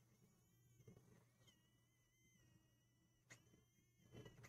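Near silence: room tone, with only a couple of tiny faint ticks.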